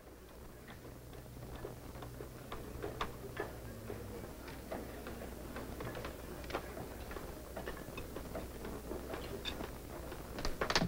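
Light, scattered clinks of china plates being handled and washed, a few irregular clicks a second, over a low steady hum.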